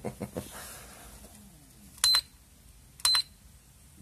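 IMAX B6 LiPo balance charger beeping twice, about a second apart, as its front-panel buttons are pressed. Each beep is short and high-pitched.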